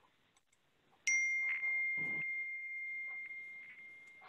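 A single high, bell-like ding starting suddenly about a second in and slowly fading over about three seconds.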